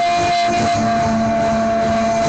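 Live acoustic band: a male singer holds one long high note over strummed acoustic guitars and a steady cajon beat.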